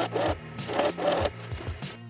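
Electric sewing machine running, the needle stitching through fabric in short runs.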